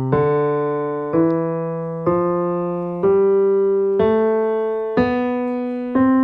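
A keyboard with a piano sound plays the C major scale upward on the white keys, one note about every second. Each note is held and fades slowly until the next, and the top C sounds near the end.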